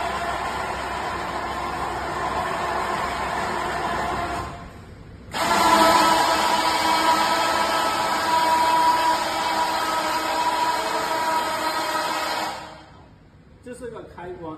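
Electric lift motor of a mobile solar light tower running steadily with a whine as it raises the telescopic lamp pole. It stops briefly about four and a half seconds in, starts again louder, and cuts off about a second before the end.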